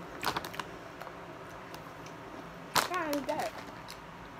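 Resealable plastic candy bag crinkling as a hand reaches in and handles it, with a cluster of sharp crackles near the start and another crackle about three-quarters of the way in.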